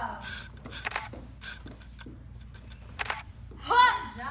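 Martial arts form practice: a few short, sharp hissing bursts about a second in and again about three seconds in, then a loud voice rising and falling in pitch near the end, the loudest sound.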